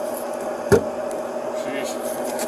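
A single sharp knock of a handled object, about a third of the way in, as a handbag's contents are searched by hand, over a steady hum.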